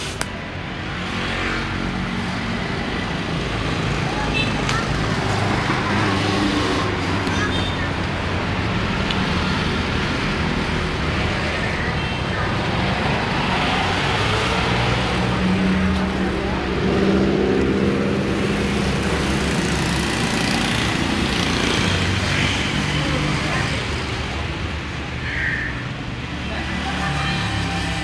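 Suzuki Thunder 125 motorcycle's single-cylinder four-stroke engine running, heard close to the exhaust, its note getting stronger in the middle.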